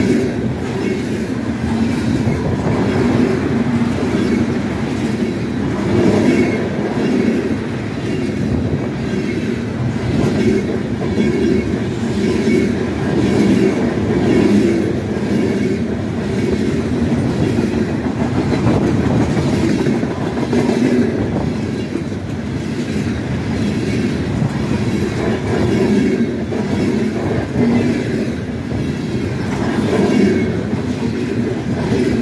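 Freight train covered hopper and tank cars rolling past close by at speed: a steady heavy rumble of steel wheels on rail, with wheel clicks repeating in a regular rhythm.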